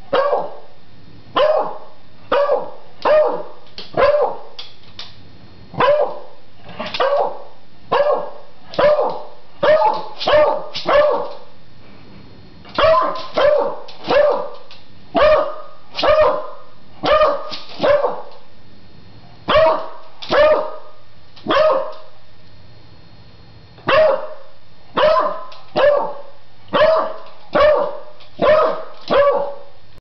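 A beagle barks repeatedly at an upright vacuum cleaner in a long run of short barks, about one to two a second, with a few brief pauses.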